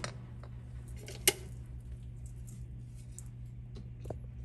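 A single sharp clink of kitchenware being handled, a little over a second in, with a few faint ticks, over a steady low hum.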